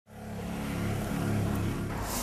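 A motor vehicle's engine running steadily in street traffic, fading in at the very start.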